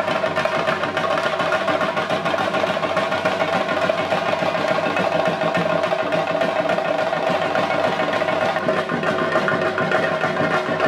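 Percussion music: fast, dense drumming, with a steady ringing tone held above it.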